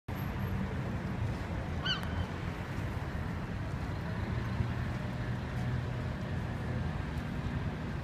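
Steady low rumble of city traffic around a public square, with a brief high squeak about two seconds in.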